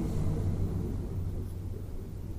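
A pause with no speech: only a steady low hum of background room noise.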